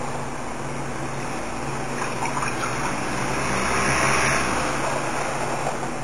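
Steady low machine hum under a rushing noise that swells around the middle and fades again.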